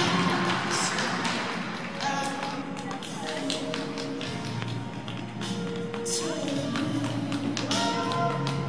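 Flamenco-style program music, sustained notes with a rapid run of sharp percussive taps over them, played for a figure skating routine.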